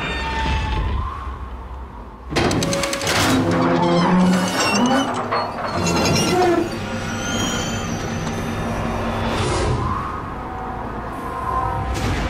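Dramatic film-trailer music, with a sudden loud crash-like hit about two seconds in, after which the music is louder.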